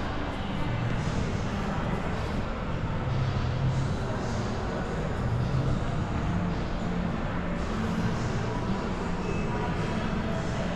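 Steady, reverberant background hubbub of a large indoor shopping-mall atrium, a continuous wash of noise with no single sound standing out.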